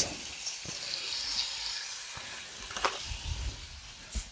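Chicken fillets sizzling in a frying pan: a steady hiss with a couple of brief clicks.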